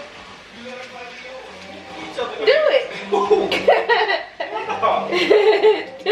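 A woman's voice chuckling and vocalizing without clear words, starting about two seconds in after a quieter stretch.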